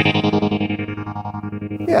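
Electric guitar chord ringing out through a NUX Mighty Air amp's tremolo effect set to full rate, its volume pulsing fast and choppy as the chord slowly fades.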